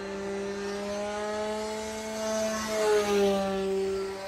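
Electric motor and propeller of a 1:8 scale Spad VII RC aircombat model in flight, a steady pitched hum. It grows loudest about three seconds in, where its pitch dips slightly.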